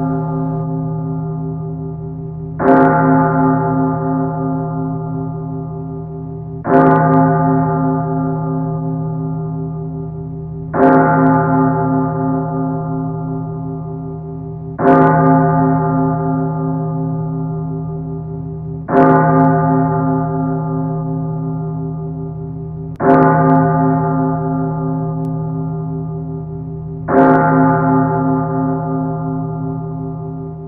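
A single bell tolling slowly, struck seven times about four seconds apart, each stroke ringing on and fading until the next.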